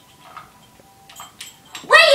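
Mostly quiet, with a few faint light clicks of toy dishes, then near the end a loud high-pitched child's voice starts, its pitch sliding up and down.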